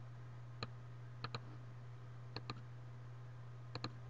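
Computer mouse button clicking: a single click, then three quick double-clicks, over a low steady hum.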